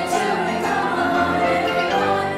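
A choir of many voices singing long held notes together with piano accompaniment.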